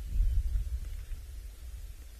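Wind buffeting the microphone: an uneven low rumble that gusts up a fraction of a second in and then slowly dies away, over a faint hiss.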